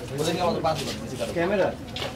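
People talking at a moderate level, in short phrases with low-pitched voices.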